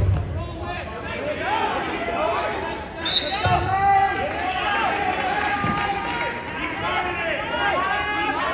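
Indistinct voices of several people talking at once in a gym, with a few dull thumps, the loudest right at the start.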